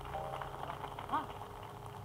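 Faint background talk in a room, with a short exclamation about a second in, over a steady low hum.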